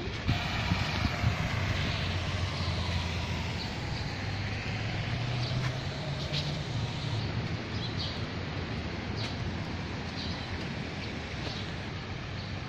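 Steady rushing outdoor noise with the low drone of a passing motor vehicle, its pitch sliding slowly down over the first few seconds.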